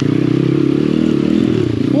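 Apollo RFZ 125cc pit bike's single-cylinder four-stroke engine running under steady throttle as it rides through mud, the revs sagging slightly past the middle and picking up again.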